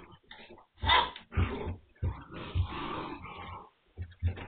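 Nine-week-old Magyar Vizsla puppies playing rough: irregular puppy growls and yaps mixed with scuffling, loudest about a second in and busiest in the second half, heard through a security camera's dull, narrow-band microphone.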